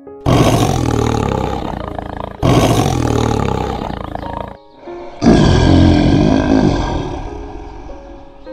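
Tiger roaring three times, each roar about two seconds long and fading away, the third the loudest and longest. Soft piano music plays underneath.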